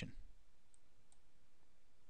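Two faint computer mouse clicks, less than half a second apart, over quiet room tone.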